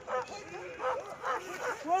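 A dog barking in quick short barks, about two to three a second.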